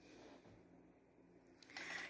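Near silence: room tone, with a faint, brief noise near the end.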